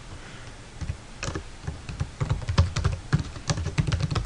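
Typing on a computer keyboard: a quick, irregular run of key clicks beginning about a second in.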